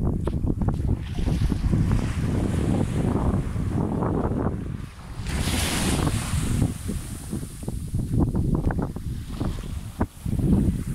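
Wind buffeting the microphone with a steady low rumble, over small sea waves washing up a sandy shore; a wave breaks and hisses about halfway through.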